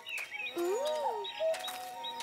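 Soundtrack background music with short, high bird chirps.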